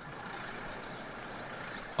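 Steady street-traffic noise, an even rush of passing vehicles with no clear pitch.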